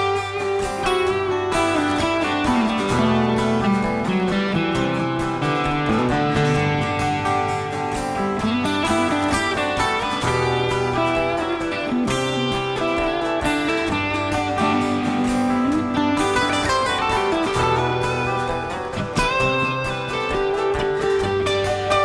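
Acoustic guitar strummed steadily with a man singing over it.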